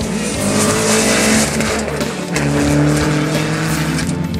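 Dacia Duster rally car driving hard on loose dirt: the engine runs at high revs and the tyres scrabble and slide on the surface, with background music underneath.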